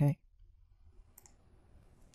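A single faint computer mouse click about a second in, over quiet room tone.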